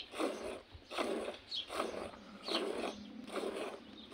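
A camel being hand-milked into a steel bowl already full of froth: squirts of milk hiss into the foam in a steady rhythm, a little more than one a second.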